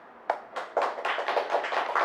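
Audience applauding: a single clap about a third of a second in, then many hands clapping together from just under a second in.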